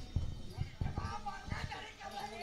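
Hooves of a pair of racing bullocks on a dirt track: a run of faint, irregular thuds, with voices murmuring in the background.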